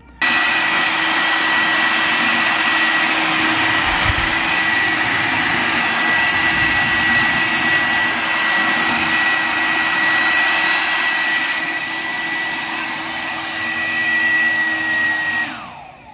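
Havells hair dryer switched on, running with a steady rush of air and a high whine, then switched off near the end, its whine falling as the motor spins down.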